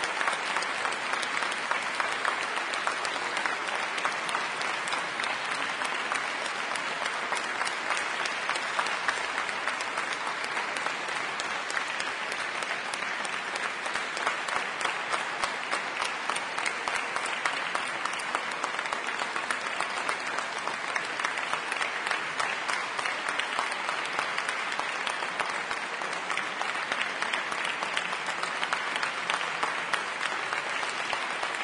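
Audience applauding steadily, a dense, even clapping.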